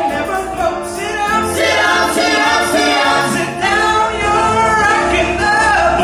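A mixed vocal group of men and women singing a cappella in close harmony through handheld microphones, with low bass notes held underneath the upper voices.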